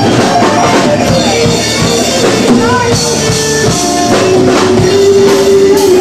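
A small rock band playing a blues number live with no singing. A lead guitar holds sustained notes and bends them over acoustic guitar, bass guitar and steady drums.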